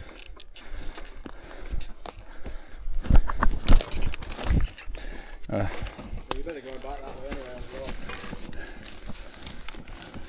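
Knocks, clicks and rustling from a mountain bike being moved through undergrowth, with several heavy thumps a few seconds in. A voice is heard briefly after the middle.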